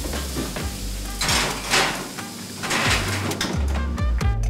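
A hot metal sheet pan of sizzling broccoli being slid back into the oven: a few short bursts of hiss and metal pan noise over steady background music.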